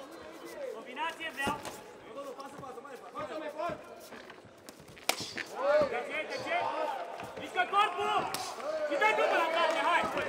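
Men shouting at ringside, loudest in the second half, in words that are not picked out. Three sharp smacks of kickboxing strikes landing cut through, about a second and a half in, halfway through, and near the end.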